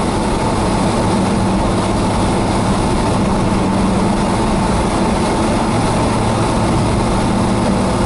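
Car engine drone and tyre-on-road noise heard inside the cabin while cruising steadily at highway speed. It is a constant low hum under a broad rushing noise, with no change in pitch.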